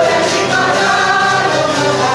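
A mixed group singing together, accompanied by an ensemble of citeras (Hungarian table zithers) strummed in a steady accompaniment.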